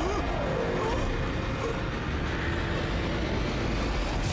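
Steady rushing, rumbling noise of a dramatic sound effect, with a man's wavering cry dying away in the first half-second. A faint high whistle rises in the second half.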